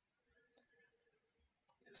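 Near silence: faint room tone in a pause of speech, with the voice coming back right at the end.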